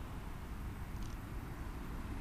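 Steady low outdoor background noise, with no distinct events.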